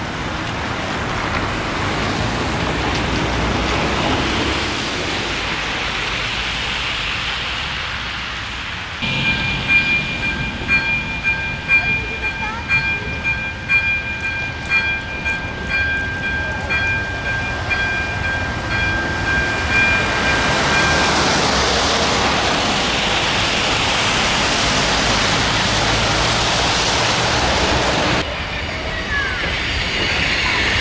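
Electronic warning bell of an AŽD 97 level-crossing signal ringing in a fast repeating pattern, about twice a second, for about twelve seconds from roughly a third of the way in, as the barriers lower. A diesel railcar then approaches and runs over the crossing, its noise swelling as it nears; before the bell there is only a steady street and traffic rush.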